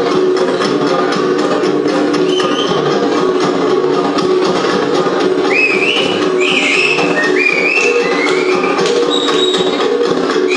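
Cordillera gong music, gangsa style: a steady rhythm of fast metallic strikes over ringing gong tones. Short, high rising whistles join in about halfway through.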